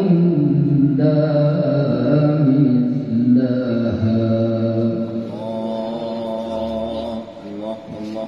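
A male qari's melodic Quran recitation (tilawah) into a microphone, in long sustained phrases with ornamented rises and falls in pitch. The last phrase ends about seven seconds in.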